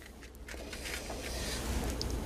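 Soft rustling and scraping handling noise that slowly grows louder, from raw bacon strips being laid out with metal tongs on a lined baking pan.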